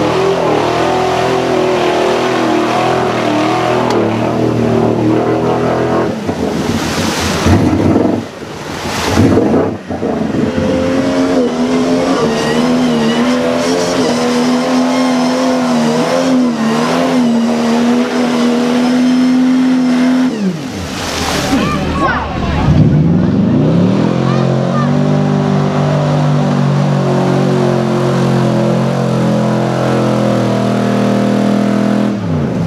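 Truck engines revving hard under load as modified 4x4s plow through a mud pit one after another, engine pitch rising and falling, with mud and water splashing. Loud surges of splashing noise come about a quarter of the way in and again past the two-thirds mark.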